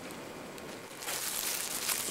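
Faint steady hiss, then from about a second in, where the recording cuts, a louder hissy rustling noise.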